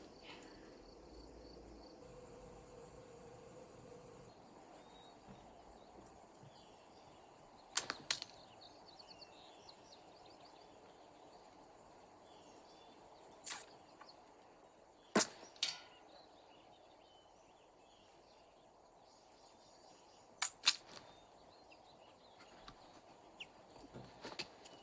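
Sharp clicks over a quiet background, mostly in close pairs about a third of a second apart: about eight seconds in, then around thirteen and fifteen seconds, and again about twenty seconds in.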